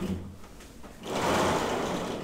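Chalk drawing on a blackboard: a gritty scratching stroke about a second long, starting about halfway in.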